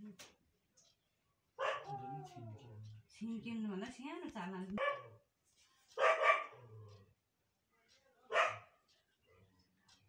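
A dog barking: two short, sharp barks about six and eight and a half seconds in, the loudest sounds here.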